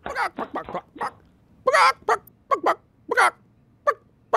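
A human voice doing a chicken impression: a string of short, separate clucking squawks, about one every half second.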